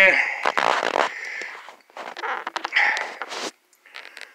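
A man's voice: a drawn-out groan trailing off just after the start, then breathy exhales and low muttering mixed with scattered clicks and rattles of a phone being fitted into a stand.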